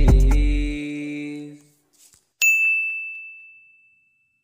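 The song's final music chord rings out and fades away. After a short gap, a single bright ding sound effect strikes and dies away over about a second and a half.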